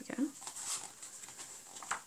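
Pages of a paperback picture book being turned quickly by hand: the paper rustles and flaps, with a light tap near the end.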